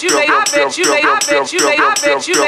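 DJ mix of electronic hip-hop music with a short voice-like sound chopped and repeated in a tight loop, about four times a second.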